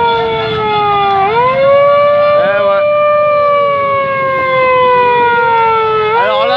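A siren wailing: its pitch rises quickly about a second in and again near the end, sliding slowly down in between.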